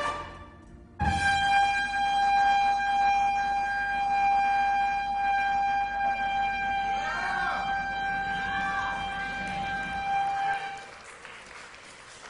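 A trumpet breaks off briefly, then holds one long, steady note for about ten seconds before fading out near the end.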